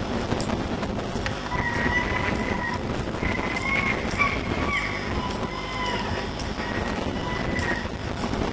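A train on the rail line: a steady rumble with a high, wavering squeal that starts about a second and a half in and comes and goes.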